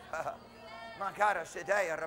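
A man's voice says one word and then breaks into a short, quavering laugh.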